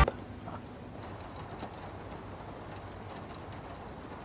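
Light rain falling: a faint, steady hiss with a few soft ticks.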